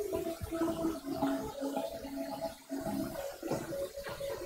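Wrestlers' feet shuffling and thudding on a foam wrestling mat as two wrestlers step in and grip up, with a steady low hum underneath.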